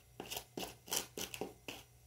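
Potting soil being stirred by hand in a plastic planter box: a quick series of about eight scraping strokes, roughly four a second, as fertiliser is mixed into the soil.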